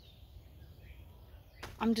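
Faint outdoor ambience: a low steady rumble with a few distant bird chirps gliding in pitch, high up. A woman starts talking near the end.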